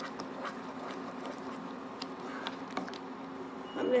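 A spatula stirring thick, wet chana dal halwa in a nonstick pan on high heat: soft scraping with scattered small ticks, over a steady low hum.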